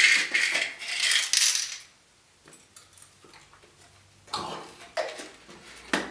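Capsules rattling inside a small pill container as it is handled and opened: about two seconds of dense, high-pitched rattling, then a few light clicks and a shorter rattle near the end.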